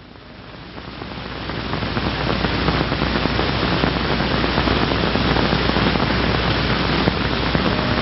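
Steady hiss with a low hum from an old 16mm film soundtrack, fading up over the first two seconds, holding level, then cutting off abruptly at the end.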